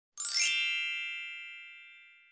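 A single bright chime that swells in quickly a moment after the start, then rings away over about two seconds, with a shimmer of high overtones.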